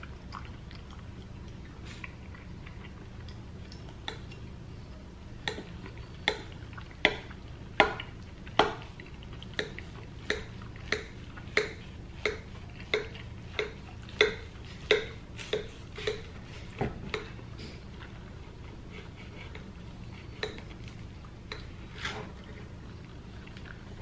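Kitchen knife cutting down through a baked taco lasagna, its blade knocking against the glass baking dish in a series of sharp clicks, about one and a half a second for roughly ten seconds, some with a brief glassy ring.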